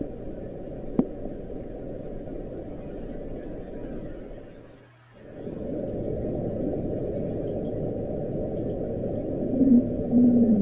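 Low, muffled rumbling ambient sound effect that fades down about four seconds in and swells back about a second later. There is a single sharp click about a second in, and a low droning tone enters near the end.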